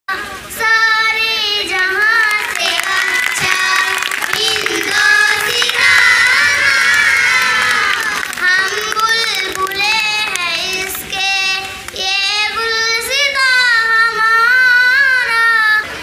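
Children singing together in chorus, a melody of long held notes, with several voices clearly overlapping about six to eight seconds in.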